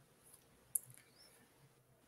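Near silence, broken by one faint, short click about three quarters of a second in.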